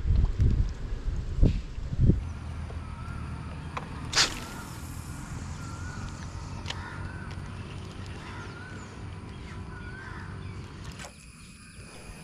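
Crows cawing and other birds calling again and again in the background. There are a few low thumps in the first two seconds and one short, sharp sound about four seconds in.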